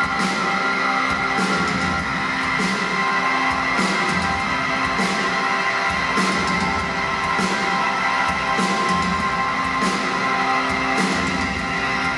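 Live band playing an instrumental passage with no singing: sustained string and keyboard tones over a steady beat, with a sharp hit about every second and a quarter.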